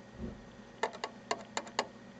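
A soft low thump just after the start, then about eight short, sharp clicks in three quick groups over about a second.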